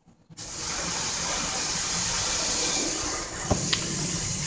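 A brief gap of near silence, then a steady hiss of background noise, with a couple of faint clicks about three and a half seconds in.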